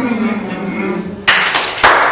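A man's voice imitating the taunting bird, a held, slightly wavering sung tone made with a hand cupped at the mouth. About a second in it breaks into a loud hissing blown burst, followed by a sharp snap.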